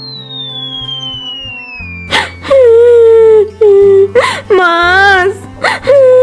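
A thin whistle falls steadily in pitch over the first two seconds. Then come several loud, high-pitched wailing cries, one with a wavering pitch, over steady background music.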